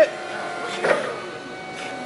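Forklift running with a steady whine as it turns.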